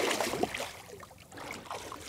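Water splashing and sloshing as a large lake sturgeon is released from a landing net over the side of a boat, loudest at the start and then fading.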